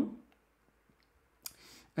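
A quiet pause broken by a single sharp click about one and a half seconds in, followed by a brief faint hiss before speech resumes.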